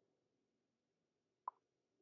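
Near silence, broken once about one and a half seconds in by a single short plop.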